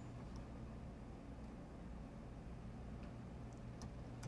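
Quiet room tone with a steady low hum, and a few faint computer mouse clicks, mostly near the end.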